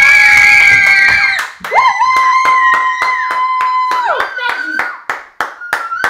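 Family cheering with long, held shouts over clapping in a steady rhythm, about four claps a second. The clapping thins out near the end.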